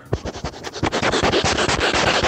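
A dog sniffing right at the microphone: a rapid run of short, noisy sniffs, louder from about a second in.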